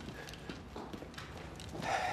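Footsteps on a wooden floor: a few soft, uneven steps of a person walking in sneakers.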